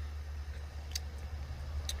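Two faint, short clicks about a second apart over a steady low hum.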